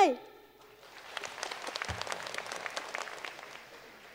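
Studio audience applauding: a short round of clapping that starts about a second in, builds, and fades away near the end.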